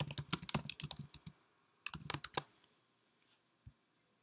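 Typing on a computer keyboard: a quick run of keystrokes for about a second and a half, a short second burst about two seconds in, then a single click near the end.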